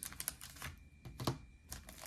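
Faint, scattered light clicks and taps of fingers handling wax-paper card packs in a cardboard display box.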